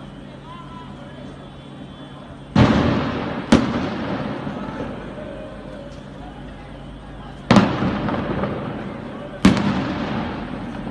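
Four loud explosive bangs from pyrotechnic blasts. Two come about a second apart a little over two and a half seconds in, and two more come near the end. Each bang dies away slowly in a long echo.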